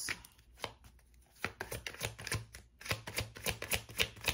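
Tarot deck shuffled by hand, the cards snapping together in short clicks: a few scattered at first, then a quick run of about five a second near the end.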